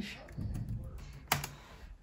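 Typing on a laptop keyboard: a short run of key clicks as the word 'Foxes' is typed, with one sharper click a little past the middle.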